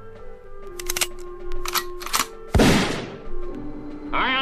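Music with held notes and a few sharp clicks, then one loud gunshot sound effect about two and a half seconds in, fading over about half a second.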